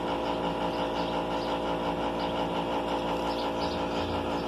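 A motor running steadily with an even, unchanging hum.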